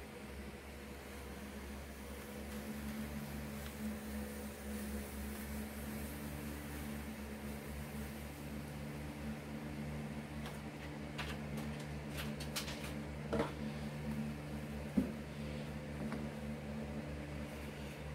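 Faint crackle and crinkle of heat-transfer paper being hot-peeled off a freshly pressed T-shirt, with a few light ticks from about ten to fifteen seconds in. Underneath runs a steady low electrical hum.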